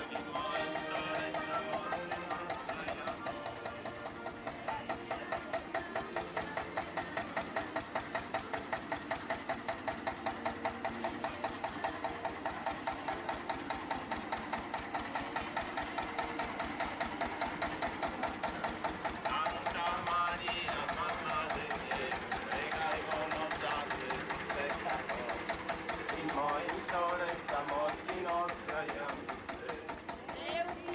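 Small tractor engine running slowly with a steady, rapid, even beat. Voices of the crowd come in over it from about two-thirds of the way through.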